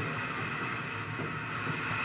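Walkie-talkie static: a steady hiss from the handset, which the investigators take for the radio answering a question put to an unseen presence.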